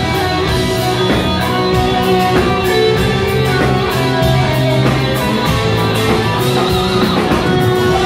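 A rock band playing live, an instrumental passage on electric guitars, bass guitar and drums with a steady beat of cymbal hits.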